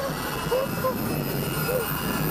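Loud, dense low rumbling from a motion-ride theatre's speaker system, with a few short exclamations or laughs from riders over it.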